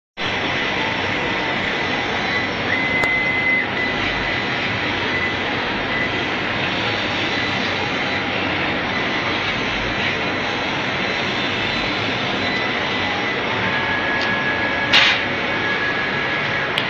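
Workshop machinery running with a steady, loud hiss and a faint high whine that steps in pitch a few times. A short, sharp knock comes about fifteen seconds in.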